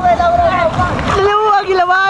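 Several men shouting and yelling, one voice holding a long call through the second half, over water splashing around wading legs.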